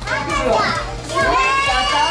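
Children's voices and chatter in a busy playroom, over background music with a steady beat.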